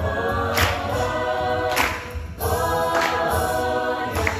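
An a cappella group singing a pop song in harmony, with a sharp backbeat hit about every second and a quarter and a brief dip in the sound a little past halfway.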